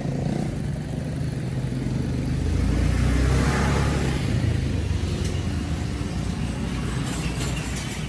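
A motor vehicle's engine running close by over a steady low rumble. It swells to its loudest a few seconds in, then eases off.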